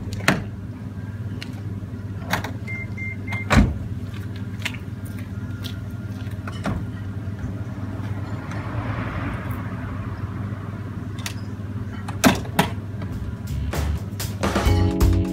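Nissan LEAF being unplugged after a charge, over a steady low hum. Three short high beeps come about three seconds in, followed by a solid knock. Two clacks near the end as the charge port lid at the car's nose is pushed shut.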